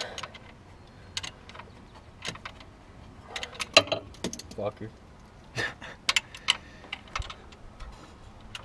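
Irregular light metal clinks and clicks of hand tools on the engine's accessory drive, as the new drive belt's tension is being adjusted.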